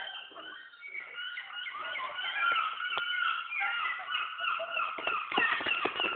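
Animal calls: a dense chatter of many short, high, overlapping chirps that grows louder about a second in.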